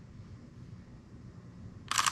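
A camera shutter fires once near the end, a single short click; otherwise quiet room tone.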